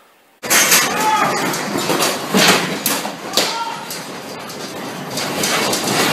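A house shaking in an earthquake: a sudden loud outbreak of rattling and clattering, with dishes, glass and household objects clinking and knocking together. It eases somewhat after about three seconds, then builds again near the end.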